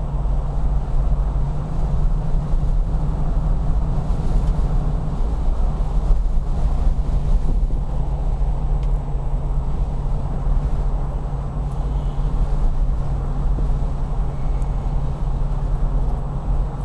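The 7.2-litre Chrysler 440 V8 of a 1974 Jensen Interceptor Mk3, fuel-injected, running at a steady engine speed with a deep, even throb, heard from inside the car along with road and tyre noise.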